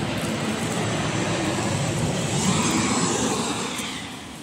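Rushing noise of a passing vehicle, building to its loudest about two and a half seconds in and easing off toward the end.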